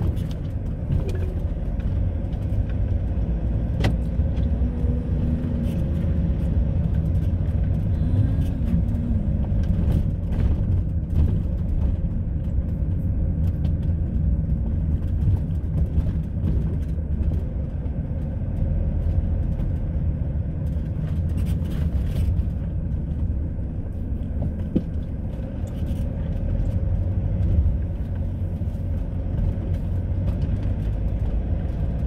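Steady low rumble of a car driving slowly, heard inside the cabin: engine and tyre noise, with a few faint clicks.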